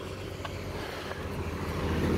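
Road traffic noise: a steady rumble of a passing motor vehicle that grows louder near the end.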